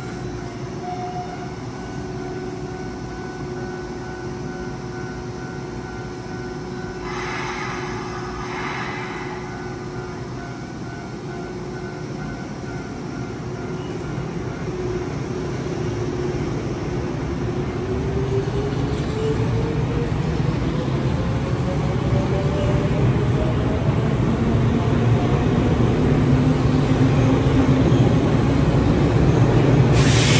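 Electric commuter train running, its motor whine rising in pitch and the running noise growing steadily louder from about halfway through as it accelerates.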